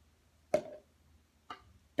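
A plastic toy golf club strikes a ball with a sharp click about half a second in, and about a second later a fainter click as the ball knocks against a plastic cup.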